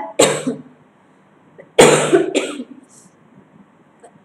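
A woman coughing: a short burst just after the start, then a louder, harsh cough about two seconds in, trailing into a second smaller hack. Her throat is hoarse.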